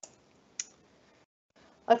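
A single sharp click from the presenter's computer about half a second in, the slide being advanced, amid near silence; a woman starts speaking right at the end.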